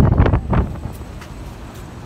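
Passing road traffic on a city street, with wind buffeting the microphone. It is loudest in the first half second, then settles to a low, steady traffic rumble.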